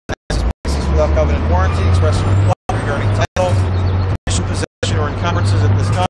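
A man's voice, an auctioneer reading out the terms of a property sale, over a steady low rumble. The sound cuts out to silence for an instant several times.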